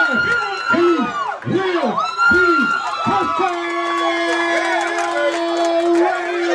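Sideline spectators cheering and yelling at a youth football game, one voice shouting the same short call over and over about twice a second with a high held scream above it. From about three and a half seconds in a long steady held note takes over.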